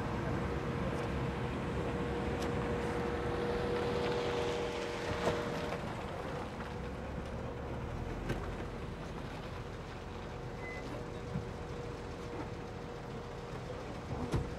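Steady vehicle noise, with a held hum for the first several seconds and a few faint clicks later.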